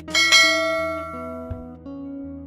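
Notification-bell chime sound effect from a subscribe-button animation: one bright bell ding that rings out and fades over about a second and a half, over background music.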